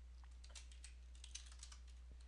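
Faint typing on a computer keyboard: scattered light key taps over a steady low hum.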